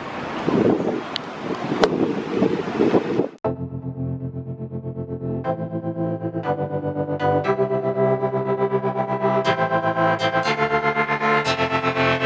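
Wind rushing on the microphone over street noise for about three seconds, then a sudden cut to background music: sustained chords changing about once a second over a quick steady pulse.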